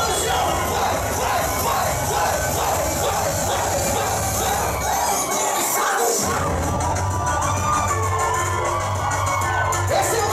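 Loud baile funk music on a club sound system with a pounding bass beat, and a packed crowd shouting and cheering over it. The bass drops out briefly about halfway through and then comes back in.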